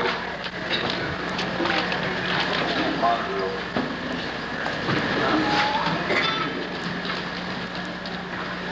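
Indistinct murmur of voices in a hall, with scattered small clicks and knocks, over a steady low hum.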